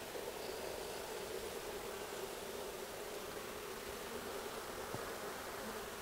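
Steady hum of many honeybees buzzing over an open hive.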